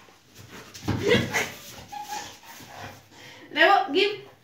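A Rottweiler vocalizing in short bursts, loudest about a second in, with a brief thin whine-like tone a second later.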